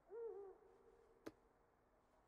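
Faint, hushed sounds: a soft hooting call that bends a little, holds one steady note and fades out, then a single sharp click of a shogi piece just past a second in.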